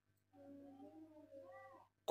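Near silence, with a faint, wavering pitched cry about a second and a half long that rises and falls near its end.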